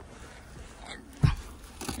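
Quiet handling noise around a car's rear seat, with one dull thump a little past halfway and light rustling near the end.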